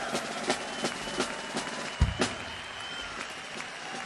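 Live jazz-fusion band with the drum kit playing sparse, evenly spaced cymbal taps about three a second, a heavy bass-drum hit about two seconds in, and a faint held high tone underneath: the quiet opening bars of a tune.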